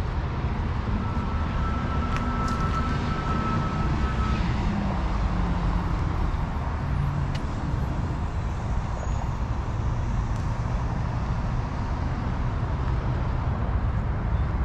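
Steady road traffic noise with a low rumble throughout and a faint whine in the first few seconds.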